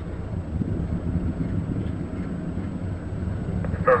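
Steady low rumble of a Soyuz-2.1a rocket in flight, heard from far off on the ground, mixed with wind on the microphone.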